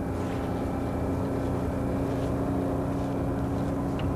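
Steady low drone of a moving bus, heard from inside the passenger cabin, with a steady humming tone riding over it.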